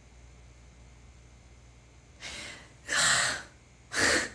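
A woman's breathy laughter: a soft puff of breath about two seconds in, then louder gasping laughs near the end.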